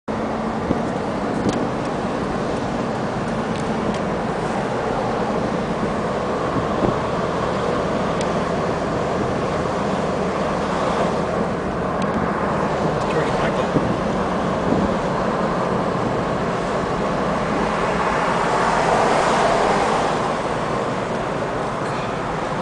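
Steady road and engine noise of a moving car heard from inside the cabin, swelling louder for about two seconds near the end.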